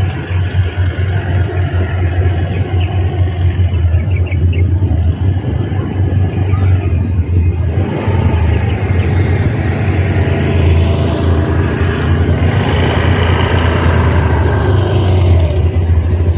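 A Honda Beat scooter's small single-cylinder engine riding past, its pitch rising as it comes closer about halfway through and falling away near the end, over steady low wind noise on the microphone.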